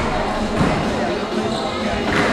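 Squash ball being struck during a rally: one sharp crack about half a second in.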